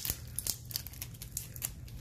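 Small plastic seasoning packet from a salad kit crinkling in the hands, a run of short, irregular crackles.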